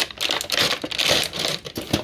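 Plastic packaging crinkling and rustling, with irregular clicks, as a plastic-wrapped toy piece is handled and pulled out of its cardboard box.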